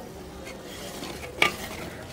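A metal ladle stirring potato curry in an aluminium pot over a wood fire, with a steady low hiss from the pot and fire and faint scraping ticks. About one and a half seconds in comes a single sharp metal clink of the ladle against the pot.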